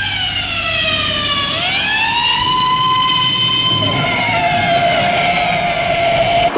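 A loud siren sound effect: one wailing tone that slides down, swoops back up and holds, then drops and settles on a lower steady pitch.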